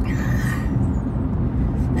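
Steady low rumble of road and engine noise inside a car moving at highway speed.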